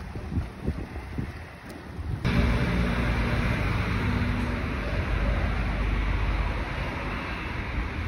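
Wind gusting on the microphone beside choppy water. About two seconds in it cuts off abruptly, replaced by a louder, steady rumble and hiss of street background noise.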